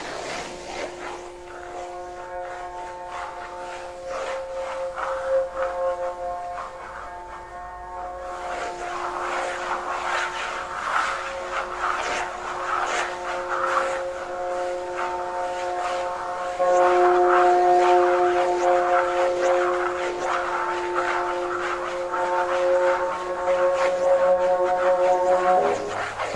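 Free-improvised electric guitar and amplifier sounds: several steady electronic tones held and layered together. Scratchy, rasping noise joins about a third of the way in, and the whole sound steps up in loudness about two-thirds of the way through.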